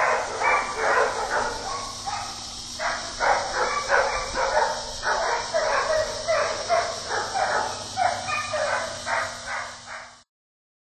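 Dog barking over and over, two to three barks a second, over a steady high hiss, fading out at the end.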